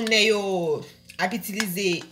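Speech: a person talking, with a short pause about a second in.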